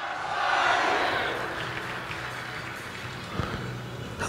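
Audience applauding; it swells to its loudest within the first second and then slowly dies down.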